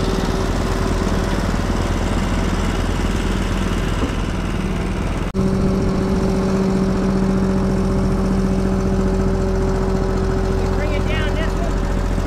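Small gasoline engine of a walk-behind concrete power trowel running steadily, with a brief dropout about five seconds in.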